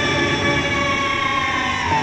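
A male Burrakatha singer holding one long, high sung note into a microphone, amplified, the pitch dipping near the end.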